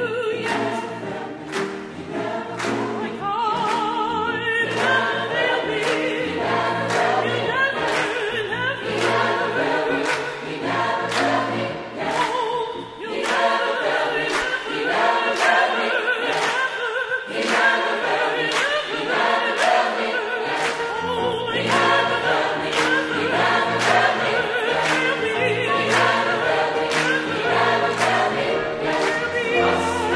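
Large mixed choir singing an upbeat gospel-style piece with piano and a steady percussive beat.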